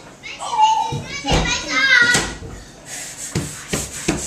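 A young child's excited squeals and laughter, high and sliding in pitch, followed near the end by a quick patter of bare feet running on a wooden floor.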